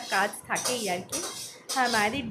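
Dishes and metal cutlery clattering and clinking in several bursts, with a woman's voice speaking over them.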